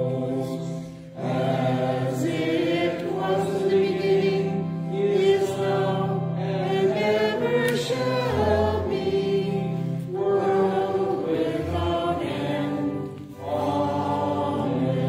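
A congregation singing a hymn together with a steady keyboard accompaniment, pausing briefly between phrases about a second in and again near the end.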